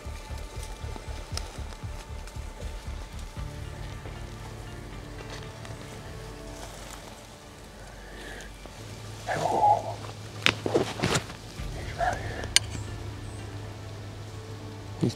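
Background music with slow, sustained low bass notes that change pitch every few seconds. About two-thirds of the way through, a few sharp snaps and rustles come in over it.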